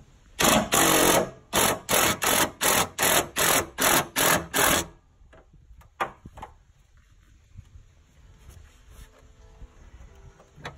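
Cordless power tool spinning a 13 mm socket to back out a fuel-tank strap bolt: one run of about a second, then about nine short bursts in quick even succession, stopping about halfway through. A couple of faint clicks follow.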